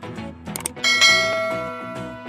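Subscribe-button sound effect: a quick double click a little after half a second in, then a bright bell chime that rings on and slowly fades, over background music.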